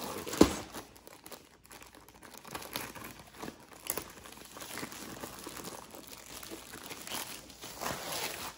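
Clear plastic wrapping crinkling and rustling as a rolled diamond-painting canvas is handled and unwrapped, with one sharp knock about half a second in.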